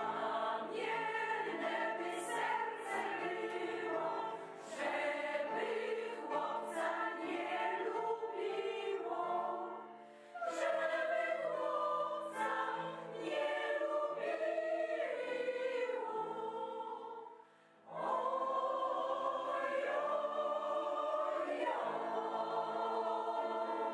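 Mixed choir of men's and women's voices singing in parts, with two short breaks between phrases, one about halfway and one about three-quarters through.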